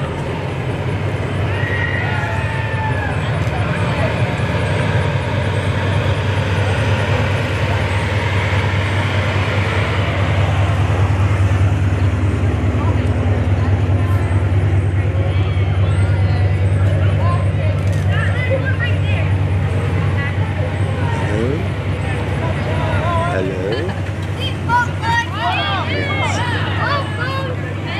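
Parade cars rolling slowly past with a steady low engine rumble, loudest about halfway through, over scattered voices. Near the end, children's voices calling out come to the fore.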